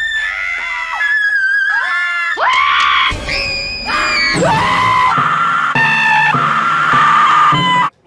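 A quick string of about eight screams and squeals from different people, cut one straight after another. Each is held at a high pitch for about half a second to a second, then jumps to a new pitch.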